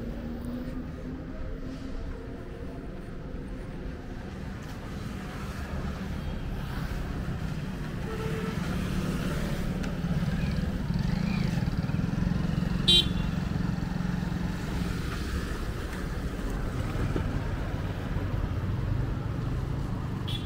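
Roadside traffic: motor vehicles and motorcycles passing, growing louder toward the middle, with one short horn toot about two-thirds of the way through.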